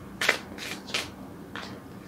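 A deck of tarot cards being shuffled by hand: four short strokes.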